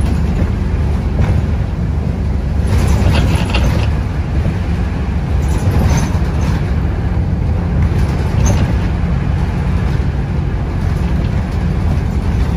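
Steady low engine and road rumble heard from inside a moving vehicle, with a few brief higher-pitched noises over it.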